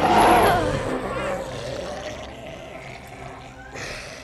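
Film soundtrack of Jabba the Hutt, the giant slug-like creature, giving a deep choking groan as he is strangled. The groan is loudest at the start and fades away over the next few seconds.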